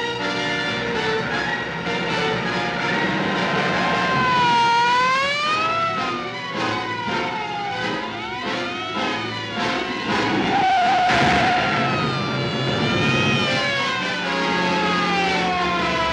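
Dramatic orchestral film score over police car sirens, whose pitch rises and falls in long, overlapping sweeps.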